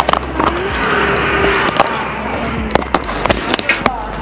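Street noise from a camera moving along a city road, with frequent sharp knocks and rattles of the jostled recording device; a faint steady hum rises and then holds for about a second near the start.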